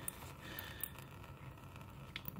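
Faint handling noise: a gloved hand rustling against the oil pan's drain bolt, with a couple of light clicks.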